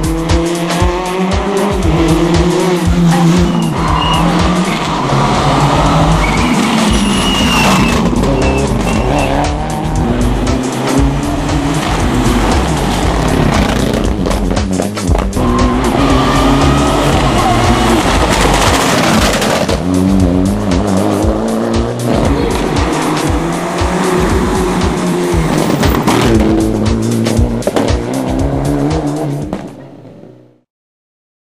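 Rally car engines revving hard, the pitch climbing and dropping again and again as they change gear, with tyres squealing. The sound fades out near the end.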